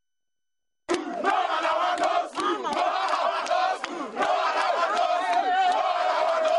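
A large crowd of protesting students shouting and chanting together, starting abruptly about a second in.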